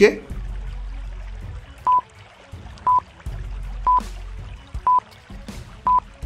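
A countdown timer sound effect: five short, high single-tone beeps, one each second, starting about two seconds in, over low background music.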